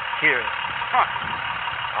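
A steady background noise, like distant traffic or machinery running, under a few brief words of speech.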